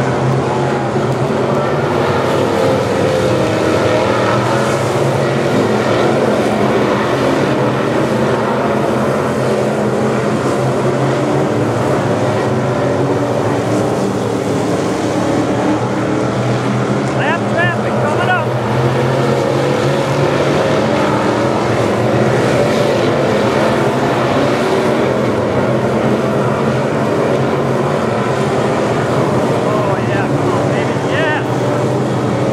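Several dirt-track race cars running laps together, their engines making a loud, steady drone, with brief rising and falling pitches as cars pass about two-thirds of the way through.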